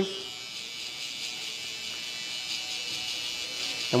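Electric T-blade hair trimmer running with a steady, thin high buzz as its blade corner is worked against the nape to cut a curved line.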